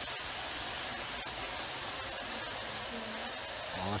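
Large-scale model train running on outdoor garden track: a steady, even rushing noise from its wheels and motor.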